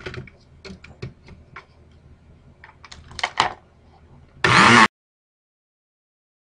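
Light clicks and knocks of a plastic lid and glass blender jar being handled and fitted. About four and a half seconds in comes a loud burst of noise lasting half a second, then the sound cuts off suddenly.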